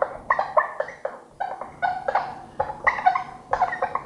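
Felt-tip marker squeaking on a whiteboard as a word is written: a quick run of short, high squeaks, about three or four a second, one for each pen stroke.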